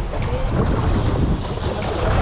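Wind buffeting the microphone over waves washing and splashing on the rocks of a breakwater: a steady rushing noise with a heavy low rumble.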